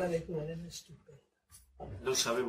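Speech only: a man talking in a small room, broken about halfway through by a brief dead-silent gap at an edit cut before the talking resumes.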